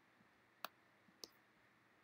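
Near silence with two short, faint, sharp clicks, about half a second apart, and a couple of fainter ticks.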